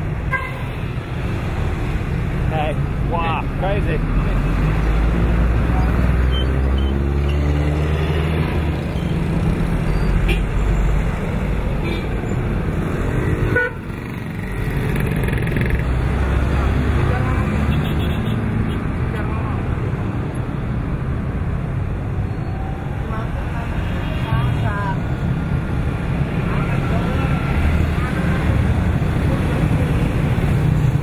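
Road traffic passing: engines of vans, trucks and motorcycles going by over a steady low rumble, with short horn toots now and then, the first about three seconds in.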